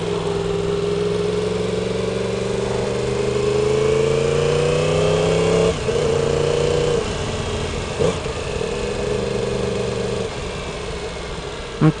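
2016 Yamaha R1's crossplane inline-four, fitted with an aftermarket exhaust, pulling at low speed: the engine note rises steadily for about six seconds, breaks sharply at an upshift, then holds steady and eases off near the end.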